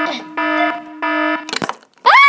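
Electronic intruder alarm beeping in a steady pulsing pattern, about two beeps a second over a continuous lower tone. It stops about a second and a half in, and a single sharp knock follows.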